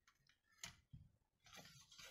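Faint handling of a clear plastic set-square ruler on a paper pattern sheet: a couple of light taps, then a brief scrape of plastic and paper near the end as the ruler is laid down.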